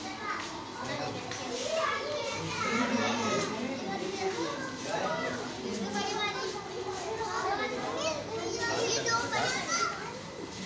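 Several children talking and calling out over one another, high-pitched and overlapping, with no single voice clear.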